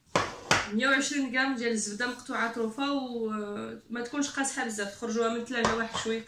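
A woman talking almost without pause, with two short knocks at the very start.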